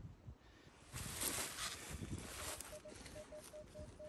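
Minelab Equinox 800 metal detector sounding a string of short, single-pitched beeps, starting about halfway through, as the coil is swept over a buried target. It is the good tone of a solid target reading 18, over faint rustling.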